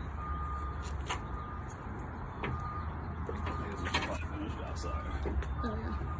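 Outdoor background: a steady low rumble with a faint beep that sounds about once a second, and a few light knocks.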